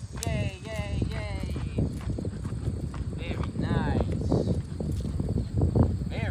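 A corgi whining in short, falling cries: a cluster near the start and more around the middle. Footsteps patter on the asphalt underneath.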